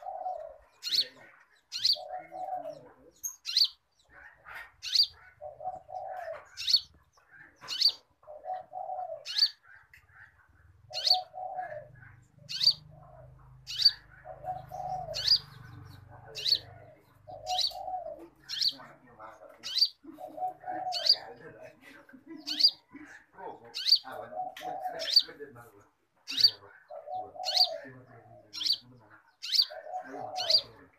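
A caged konin songbird singing steadily, repeating sharp high chirps about once a second. Lower, shorter calls come in between about every two seconds.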